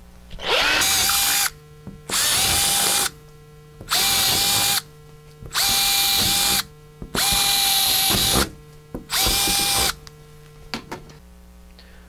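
Cordless drill boring half-inch holes into drywall in six separate runs of about a second each, the motor running up to a steady whine each time.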